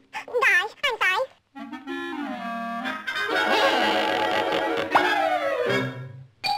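Donald Duck's squawky cartoon voice chattering in a few short wavering bursts. After about a second and a half, an orchestral cartoon score with woodwinds takes over: a low held note, then fuller held chords with a quick slide near the end, fading out.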